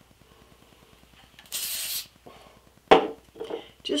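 One short spray of hairspray, a steady hiss about half a second long, misted onto a synthetic wig to settle flyaways, followed about a second later by a sharp knock.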